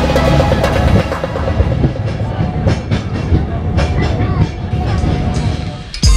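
Background electronic music fades out about a second in, leaving the Peak Tram funicular car climbing its track. Its wheels clatter and rumble on the rails, with many short clicks and passenger chatter.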